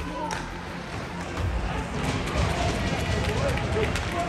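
Ice hockey rink sound from the stands: spectators' voices and music over a low rumble, with a quick run of sharp clacks and knocks from about halfway through as sticks and puck hit on the ice.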